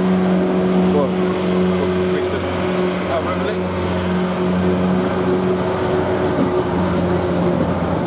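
A steady low engine hum from a vehicle idling close by, with faint voices over it.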